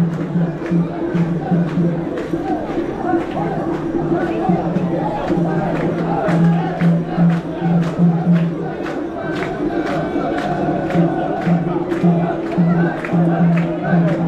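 A crowd of mikoshi bearers at a Japanese shrine festival chanting in unison, in a regular rhythm, over the general noise of the festival crowd. A steady run of sharp clicks, a few per second, runs under the chant.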